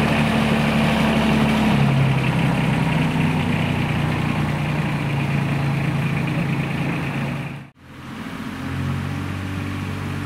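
Small engine of a miniature railway's diesel-outline locomotive running steadily as it hauls passenger cars away, its pitch changing about two seconds in. Near the end the sound drops out abruptly and a different steady engine hum takes over.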